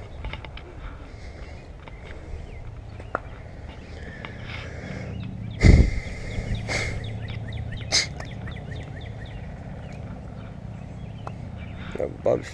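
Small birds chirping and calling over a low steady rumble, with one loud thump a little before six seconds in.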